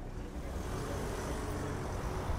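Street traffic noise: a steady rushing hiss of a car passing close by.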